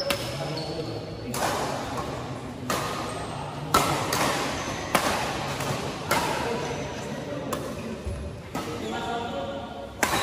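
Badminton rackets striking a shuttlecock in a fast doubles rally: a sharp hit roughly every second and a quarter, about eight in all, each ringing briefly in the large hall.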